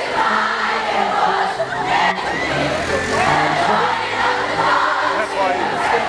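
A crowd of fans sings a pop ballad along with an amplified singer over a backing track, whose low notes step from chord to chord beneath the many voices.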